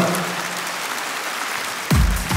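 Large concert-hall audience applauding steadily. Right at the end, a sudden low bass hit as the band starts playing.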